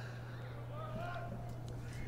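Faint ballpark background during a pause in the commentary: a steady low hum, with faint distant voices about a second in.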